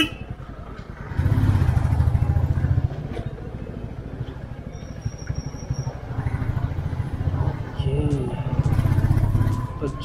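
Motorcycle engine running under the rider, its low beat swelling twice as the throttle opens, about a second in and again near the end.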